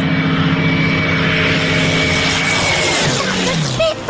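A propeller-driven piston-engine aircraft flying past, with the drone of engine and propeller. Its pitch drops about three seconds in as it passes. Background music continues underneath.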